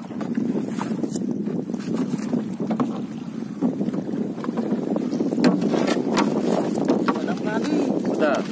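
Water splashing and lapping against a small paddled boat's hull, with wind buffeting the microphone and scattered light knocks against the boat.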